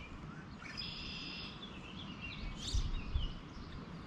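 Songbirds calling over low outdoor background noise: a steady high trill in the first half, then several short chirps a little past the middle. There is a brief low rumble near the middle.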